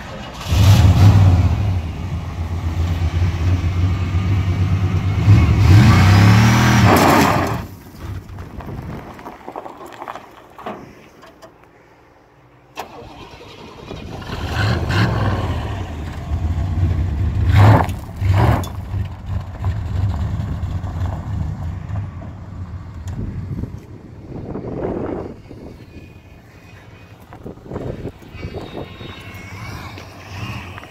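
Old GMC pickup's engine revving hard in long loud bursts for about seven seconds, dropping back, then revving up again with the rear wheel spinning in a burnout.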